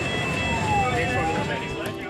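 Fire truck siren wailing, its pitch sweeping down and back up once, heard from inside the cab over engine and road noise.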